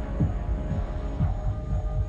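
Suspense background score: low throbbing bass pulses, a few a second, under a sustained droning hum.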